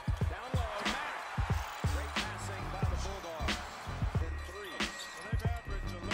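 Hip hop background music with a heavy beat: deep bass notes that slide down in pitch, and sharp drum hits a little over a second apart.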